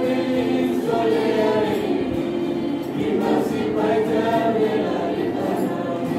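A church youth group singing a gospel song together in the Kewabi language, several voices at once.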